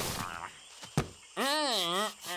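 A single dull thud about a second in, then a short vocal groan whose pitch wobbles up and down. These are a cartoon character's rock being set down and his voice as he leans back against it.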